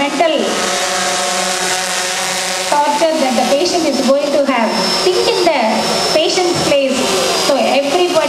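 A woman speaking into a handheld microphone, her voice carried over a public-address system, with a steady hiss of background noise beneath it.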